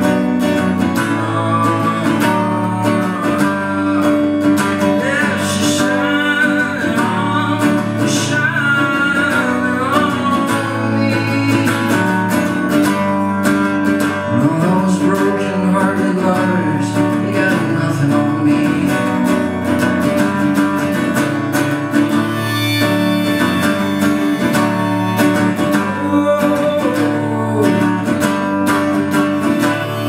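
Steel-string acoustic guitar strummed steadily, with a man's voice singing over it in places, live solo folk.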